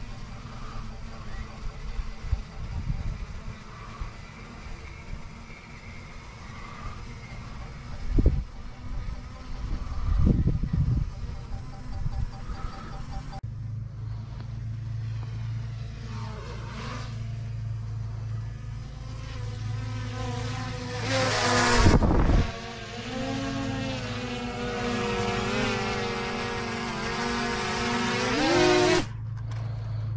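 Small quadcopter drone (DJI Mini 3 Pro) coming in close, its propellers buzzing with a wavering multi-pitched whine that swells and sweeps past, holds while it hovers and lands, then cuts off suddenly as the motors stop. Before it arrives there is only a faint low rumble with a few thumps.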